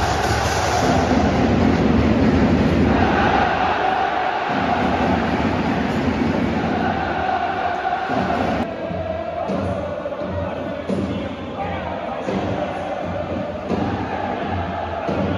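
Stadium crowd noise, with music and an announcer's voice over the public-address system echoing around the covered stands.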